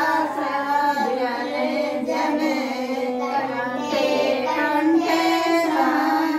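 Women and girls singing a Sanskrit song of the kind sung on auspicious occasions, with long held notes.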